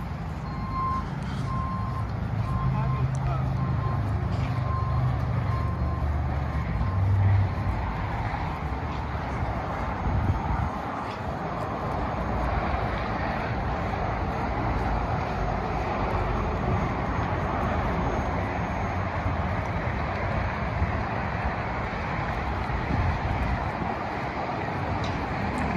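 A vehicle's reversing alarm beeping in a steady series of single high tones over a low engine hum, stopping about seven seconds in; after that a steady rush of outdoor traffic noise.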